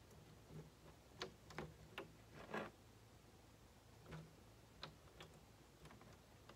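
Very faint, irregular ticks and taps, about eight in six seconds, as liquid latex is poured from a plastic measuring cup into a plastic gallon jug.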